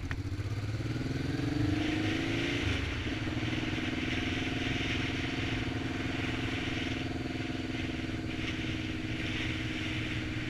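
Honda Hawk motorcycle engine pulling away, its pitch rising for the first couple of seconds. It drops at an upshift about three seconds in, then holds steady at a cruise, with wind rush over the camera microphone.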